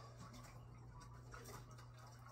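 Near silence: a low steady hum with faint scattered small ticks.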